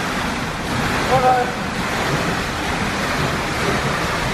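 Steady splashing and echoing water noise of an indoor swimming pool with a swimmer doing front crawl, with a short high voice-like call about a second in.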